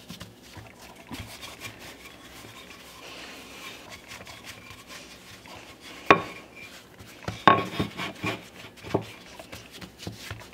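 A wooden rolling pin rolling out bagel dough on a floured wooden countertop: a soft rubbing, then a few sharp wooden knocks, one about six seconds in and a short cluster near the end.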